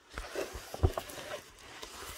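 Handling noise as the camera is moved about over a plastic-covered diamond-painting canvas: uneven rustling with several knocks, the loudest just under a second in.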